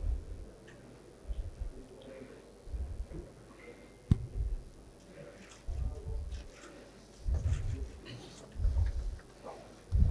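A series of low, dull thumps about every second and a half, with one sharper knock about four seconds in, over faint murmuring voices.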